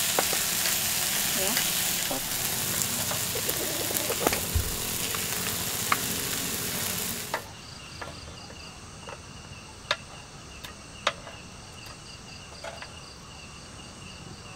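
A loud steady hiss with scattered crackles, which then cuts off abruptly about halfway through. After it, crickets chirp steadily at a high pitch in a quieter background, with a few sharp clicks.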